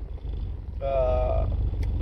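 Steady low rumble of a car heard from inside the cabin. A man's voice makes one drawn-out hesitation sound in the middle.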